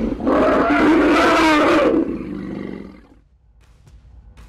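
A loud wild animal cry, a single call of about a second and a half that fades away.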